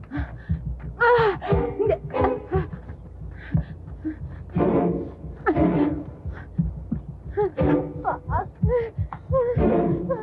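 Tense film-score music with a low, throbbing pulse, mixed with a woman's breathless gasps and cries as she runs.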